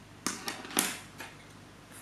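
A few short clicks and rustles of hand work as crochet yarn is cut and fastened off: scissors and hook handled against the work, the loudest clack just under a second in.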